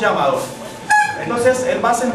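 Voices talking, with a short, bright pitched note breaking in about a second in.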